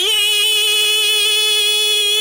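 A woman singing one long held note on "oh" into a microphone, loud and steady in pitch with a slight waver.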